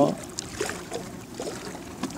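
Steady wind and water noise from small waves on open water, with a few faint clicks.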